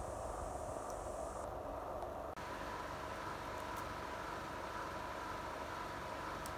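Steady background noise with no distinct sound in it: room tone. A thin high hiss sits over it for the first second and a half, and the noise changes abruptly at a cut about two and a half seconds in.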